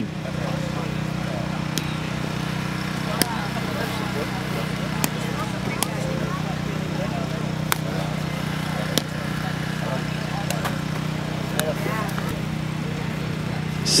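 Sharp taps of a footbag being kicked in a rally, irregular and a second or two apart, over a steady low hum and faint background voices.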